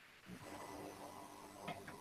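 Faint room tone and microphone hiss in a short pause between words, with a faint steady hum.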